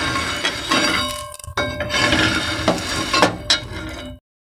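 Metal spatula scraping across a flat iron griddle (tawa) as toasted bread omelette is lifted off it, with several sharp metallic clinks along the way.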